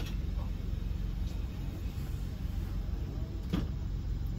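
Car engine idling, heard from inside the cabin as a steady low rumble, with a single sharp click about three and a half seconds in.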